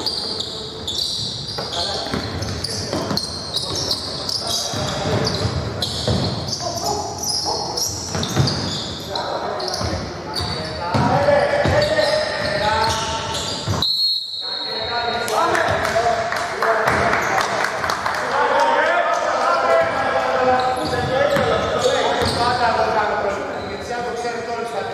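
Basketball game sounds echoing in a large indoor hall: a ball bouncing on the hardwood court and players' voices calling out. The sound drops out briefly a little over halfway through.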